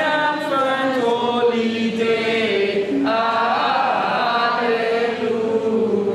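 A group of men and women singing together, holding long notes.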